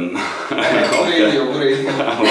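People talking and laughing, with a man's voice saying "So do I".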